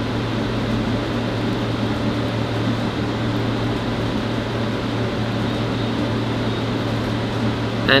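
Steady hum and hiss of room ventilation running, an even noise with a constant low hum underneath.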